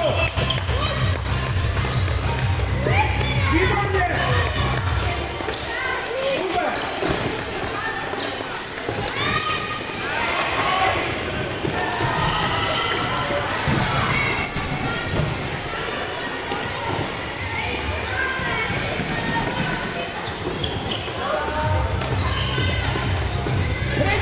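Children's voices shouting and calling across a large sports hall during a floorball game, with scattered taps of sticks and ball on the court floor.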